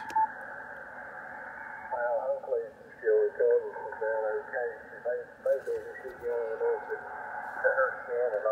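Single-sideband voice from a 75-meter amateur contact coming through a Yaesu FTdx5000MP receiver's speaker, with band hiss. The audio is narrowed to under about 2 kHz by the radio's DSP narrow filter with IF shift engaged. Hiss alone for about two seconds, then the voice comes in and runs on in short phrases.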